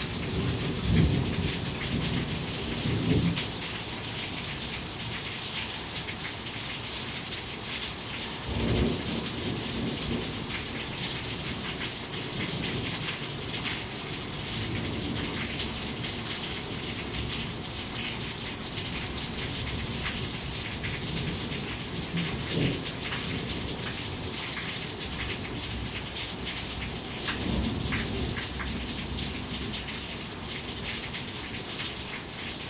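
Heavy rain falling steadily, with drops splashing off a nearby roof edge. Thunder rumbles several times through it, the sharpest clap about nine seconds in.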